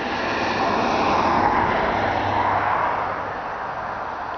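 A passing engine: a rushing hum that swells to its loudest about two seconds in, then fades away.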